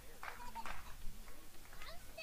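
Indistinct chatter of several voices, with no words clear, over steady low background noise.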